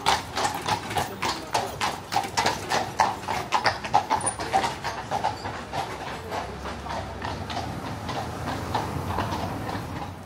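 Horse hooves clip-clopping on a paved stone street as a two-horse carriage passes close by, with quick, sharp strikes loudest in the first few seconds and fading away after about halfway.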